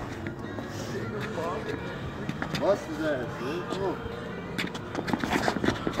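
Faint voices calling out in the distance over a low background, then short sharp taps and scuffs of feet on paving in the last couple of seconds as two men close in and grapple.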